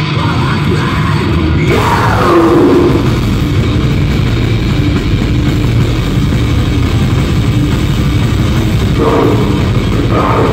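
Live hardcore punk band playing loud and fast, with distorted guitars, bass and drums; the cymbals come in a little under two seconds in. A shouted vocal starts near the end.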